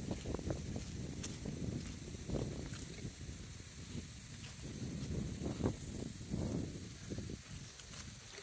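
Wind buffeting the microphone outdoors: an uneven low rumble that rises and falls in gusts.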